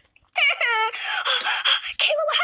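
A voice wailing loudly. It starts about a third of a second in and slides down in pitch at first.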